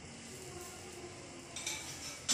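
Faint steady hiss of a gas stove burner heating an iron tawa, with a short, sharper noise about one and a half seconds in.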